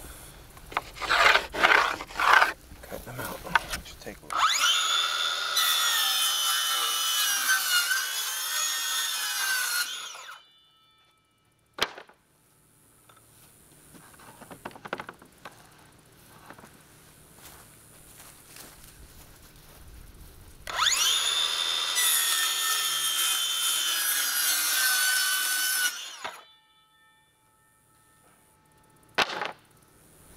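Circular saw cutting through plywood twice, each cut lasting five to six seconds with a steady motor whine under load. A few sharp knocks come before the first cut, and the stretch between the cuts is quiet.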